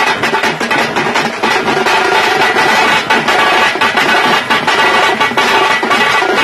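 Tamte band playing live: tamte frame drums and large bass drums beaten with sticks keep up a dense, continuous beat, with a reedy trumpet melody held over the drumming.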